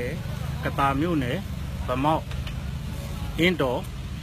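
A man speaking in short phrases over a steady low rumble of street traffic.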